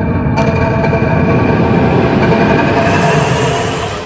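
Suspense sound design in a dramatized soundtrack: a rumbling drone with held tones, building toward the end with a rising whine and swelling hiss, then cutting off suddenly.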